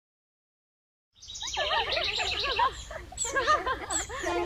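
Silence for about the first second, then cartoon birdsong: quick warbling chirps and tweets that run on in short phrases.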